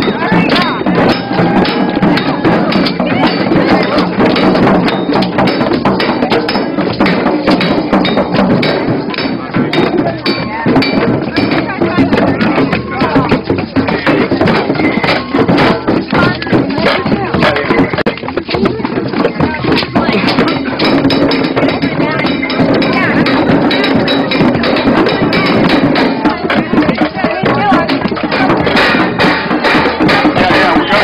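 Large wood bonfire crackling with frequent sharp pops, over the voices of a crowd and music.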